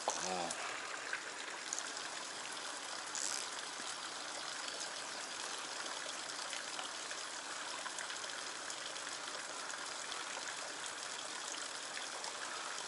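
Steady trickling and running water, an even hiss with no rhythm, with a couple of faint ticks.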